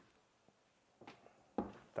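Quiet room, then a few soft knocks in the second half as casino chips are set down on the felt craps layout.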